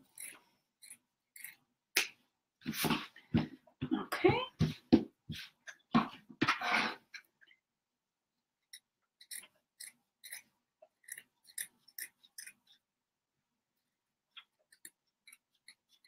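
Fabric scissors snipping through thick layers of quilted fabric and batting, a long run of short crisp cuts. A few seconds in comes a louder, denser stretch with a few short rising tones, then the cuts thin out to scattered snips.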